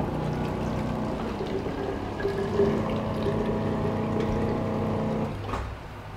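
Liquid filling machine's pump running steadily as it dispenses a preset 175 ml dose of dyed water through its nozzle into a plastic bottle, with liquid pouring into the bottle. The pump cuts off about five seconds in, when the dose is complete.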